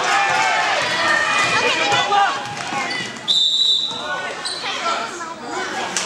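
A referee's whistle blows once, a short, sudden, high blast a little past halfway through, stopping play. Around it are spectators' voices and a basketball bouncing on the gym floor.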